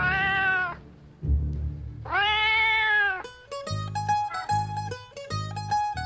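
Cat meowing twice, two drawn-out calls of about a second each that rise and fall in pitch, the second about two seconds in and louder. Background music with a steady low beat runs underneath, and a quick plucked-string melody takes over after about three seconds.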